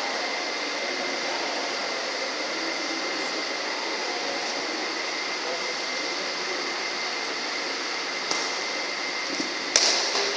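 Steady hum of fans in a badminton hall, with two sharp racket strikes on a shuttlecock near the end, about a second and a half apart, the second louder.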